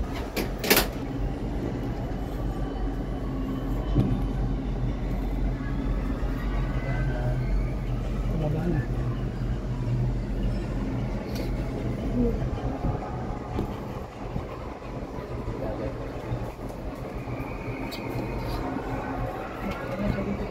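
Steady low hum and rumble inside a moving, enclosed Ferris wheel gondola, with one sharp knock just under a second in.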